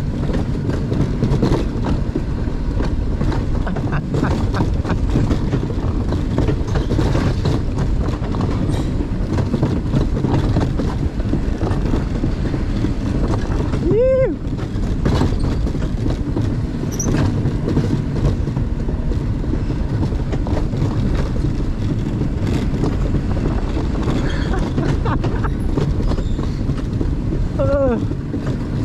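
Alpine mountain coaster cart running fast down its tubular steel track with the brake left off: a continuous loud rumble and rattle of the wheels on the rails. A short whoop cuts through about halfway.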